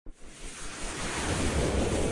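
A whoosh sound effect for an intro: a rush of noise like wind that swells steadily louder after a short click at the very start.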